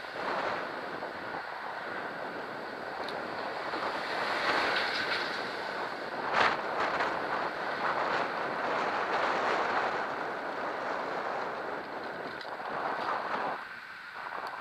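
Wind rushing over the microphone of a camera on a moving bicycle, mixed with traffic noise from cars on the road. There is a single sharp knock about six seconds in, and the rushing drops away suddenly near the end.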